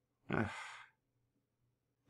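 A man's short, sighing "ugh" that starts voiced and trails off into breath.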